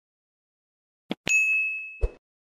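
End-screen sound effects: a mouse click about a second in, then a single bright notification-bell ding that rings on, slowly fading.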